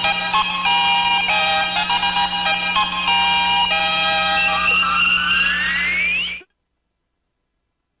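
Radio station jingle: electronic musical notes stepping through short phrases, ending in a rising sweep, then cutting off sharply into silence about six and a half seconds in.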